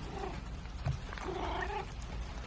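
Domestic cat making two short, quiet, rough calls, one just after the start and one in the second half, with a soft thump about a second in.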